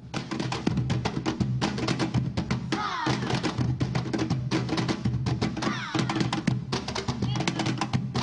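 Upbeat programme theme music driven by fast percussion, starting abruptly, with two gliding sweeps, about three and six seconds in.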